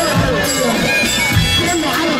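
Saidi mizmar, the Upper Egyptian double-reed shawm, playing a reedy, ornamented melody with bending notes over recurring drum beats.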